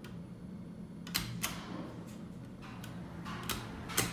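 Several sharp clicks of vintage Westinghouse elevator car-panel pushbuttons being pressed, spaced irregularly over a steady low hum.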